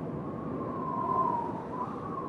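Background music: a single high note held steadily through the pause, wavering slightly in pitch, over a soft low bed of sound.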